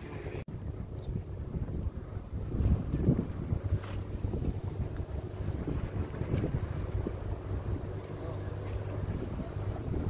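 Wind buffeting the microphone: a low rumble that rises and falls in gusts, strongest about three seconds in, with a brief drop-out about half a second in.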